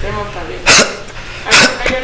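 A man's voice in a small studio: a little faint talk, then two short, sharp hissing bursts of breath or sibilant sound about a second apart.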